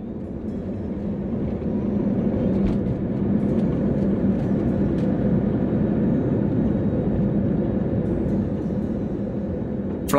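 Jet airliner's engines at takeoff and climb power heard from inside the cabin: a steady low roar that grows louder over the first two seconds, then holds, with a steady low hum under it.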